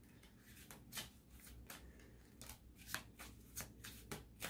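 A deck of tarot cards being shuffled by hand, heard as faint, irregular soft flicks and taps of card against card.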